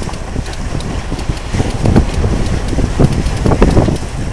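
Wind buffeting the microphone over the rush of sea past a sailing yacht's hull, with a few low thumps about two, three and three and a half seconds in.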